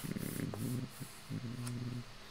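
A man's low voice quietly chanting Hebrew prayer: a rough, murmured stretch, then a held chanted note about a second and a half in.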